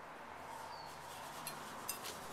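Quiet room tone with two small clinks near the end, about half a second apart, each with a short bright ring: glazed stoneware or porcelain being handled.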